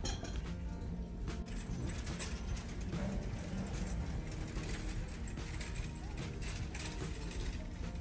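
Faint background music under a light, steady mechanical rattling.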